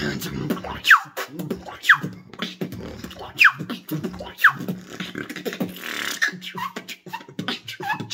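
A beatboxer's mouth-made routine: four bright whistles that fall sharply in pitch, the laser whistle formed by blowing through a tiny gap between the tongue and the top lip. They play over quick percussive clicks and kicks with a steady low hum beneath, and shorter chirping whistles follow near the end.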